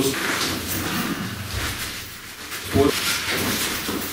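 Heavy cloth swishing and rustling as a jacket is swung and worked as an improvised flexible weapon. It dies down about two seconds in, and a man's short spoken word follows.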